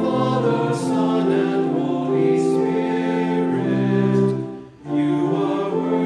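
Choir singing a hymn in held, sustained chords, with a short break between phrases about three-quarters of the way through.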